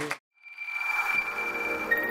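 After a brief silence, electronic ambient outro music fades in, with a sustained high synth tone and further held notes entering near the end.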